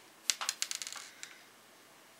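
Small metal screws clicking against each other and the bench as they are picked through by hand: a quick run of light clicks over about the first second, then quiet.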